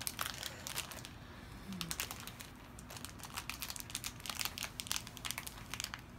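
Irregular small clicks and crinkling from a metal dragon ring being handled and fitted onto a finger.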